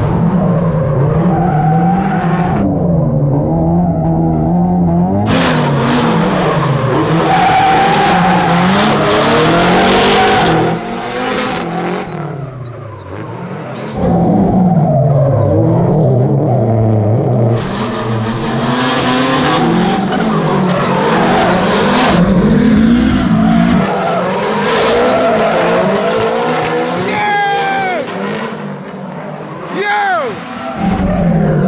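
Nissan S13 drift cars drifting in tandem: engines revving up and down hard through the slides, over screeching tyres.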